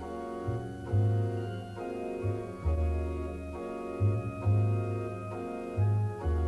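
Instrumental passage of a slow Christmas song: sustained organ chords over a deep bass line whose notes change about once a second.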